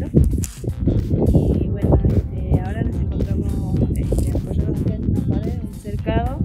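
A woman speaking Spanish over background music.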